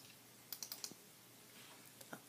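A quick run of four or five soft clicks about half a second in, from operating a computer's controls, then a faint low room hum.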